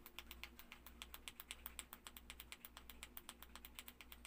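A rapid, even run of faint clicks, about eight a second, like a ratchet or a clicking mechanism, over a faint low hum.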